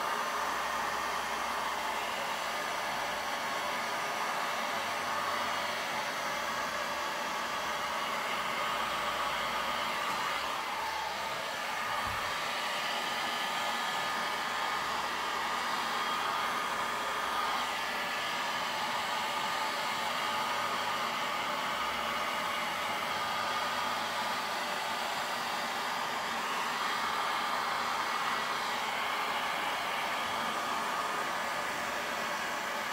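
Handheld heat gun blowing steadily over wet acrylic paint, warming the silicone oil so that cells rise through the top layer.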